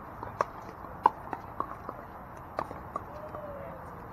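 Pickleball paddles striking a plastic ball in rallies on the surrounding courts: a string of sharp, hollow pops at irregular intervals, the loudest about a second in.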